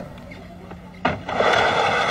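A sudden thump about a second in, then a loud, steady scraping rush as the push board slides down the slipway ramp.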